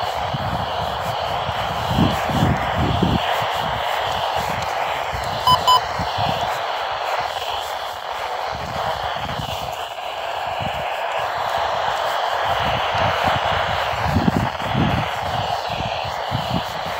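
Midland weather radio's speaker hissing with static while tuned to a weak, distant NOAA weather station. Two short electronic beeps about five and a half seconds in come from a button press, and low rumbles of handling or wind on the microphone come and go.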